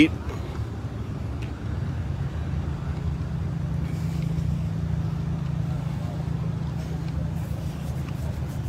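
A car engine idling with a low, uneven rumble that grows somewhat louder from about two seconds in.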